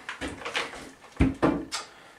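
Knocks and clatter from a long wooden straight-edge board being lowered and set aside against the stud framing: several light knocks, then one heavier thump a little past a second in and a sharp click just after.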